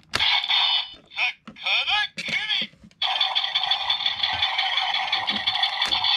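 Electronic voice calls and sound effects played through the small, tinny speaker of the Karakuri Hengen toy weapon, its finisher sequence: short shouted phrases in the first three seconds, then a steady, dense sound effect from about three seconds in.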